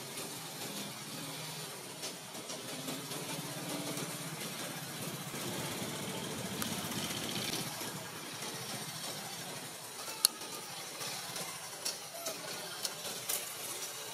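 Steady background hiss with an engine running in the distance; the engine swells over the first half and then fades. Several sharp taps or knocks come in the second half, one standing out a little after the engine fades.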